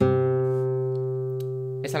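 Nylon-string classical guitar: a single low C plucked once, ringing and slowly fading.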